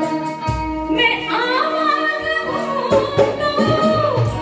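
Live band music: held electronic keyboard chords, then an amplified vocalist comes in about a second in, singing with a wavering, ornamented line over the keyboard accompaniment.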